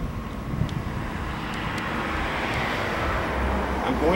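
A vehicle passing on the street: its tyre and engine noise swells through the middle and fades again, over a low wind rumble on the microphone.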